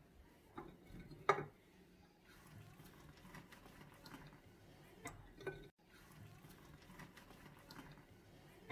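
Dried black olives being dropped into a glass jar: a few faint clicks and light knocks, the sharpest about a second in.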